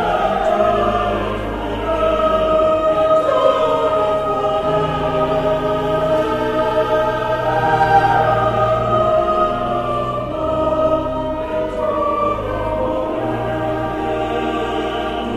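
Choir singing with pipe organ accompaniment: held, slowly changing vocal lines over sustained low organ notes, continuing without a break.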